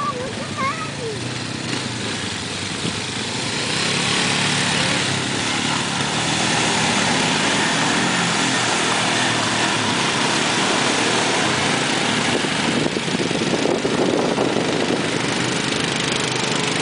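Small quad ATV engine running as it drives through mud and water, its tyres churning and throwing mud, getting louder about four seconds in and staying steady after.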